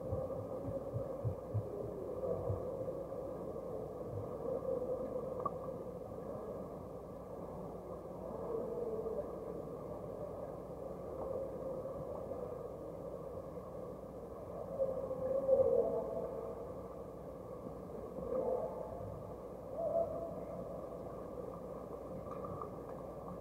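Muffled underwater sound of a swimming pool picked up by a submerged camera: a steady dull wash of water and swimmers' movement with wavering hums that swell now and then, loudest a little after the middle, and a few soft knocks near the start.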